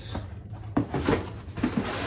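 Handling noise of a sneaker and cardboard shoebox: a few separate light knocks and rustles.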